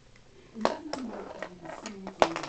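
Lego bricks clacking as a Lego-built box is pulled apart: a few sharp plastic clicks, the first two about half a second apart, starting just over half a second in.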